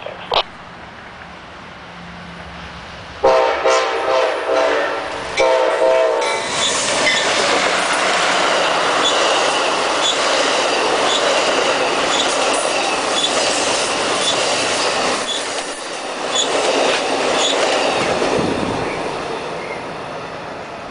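Amtrak passenger train approaching with a low rumble, its locomotive sounding its horn in three close blasts about three seconds in. Then the Superliner bi-level cars pass close by with a loud, steady rush of wheels on rail and a regular clicking, easing off near the end.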